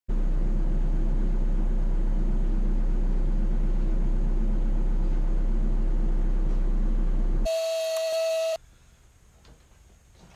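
A loud, steady droning noise with a deep hum that stops about seven and a half seconds in. A single electronic beep lasting about a second follows, then faint room tone.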